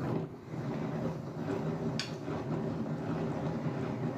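Hand-cranked plastic yarn winder being turned steadily, its gearing running with an even mechanical sound as the yarn winds onto the spindle. One sharp click about halfway through.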